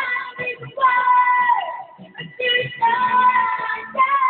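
Boy singing karaoke into a microphone over a backing track, holding long notes with a downward slide about a second and a half in.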